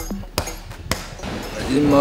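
Two sharp thuds about half a second apart as the backing music fades out, then a man starts speaking near the end.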